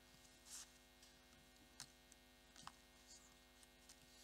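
Near silence: a faint steady electrical hum, with a couple of faint clicks.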